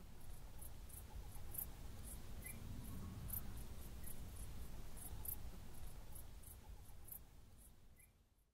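Faint night ambience: insects chirping in short, high-pitched pulses about two or three times a second over a low rumble, fading away near the end.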